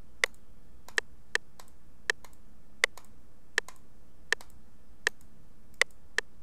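Computer mouse button clicked in a steady beat, about one click every 0.7 s, tapping out the tempo of a track in a tap-tempo tool.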